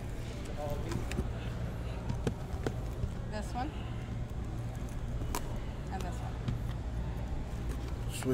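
Indistinct background voices over a steady low hum, with a few light knocks as sealed card boxes are handled and stacked on a table.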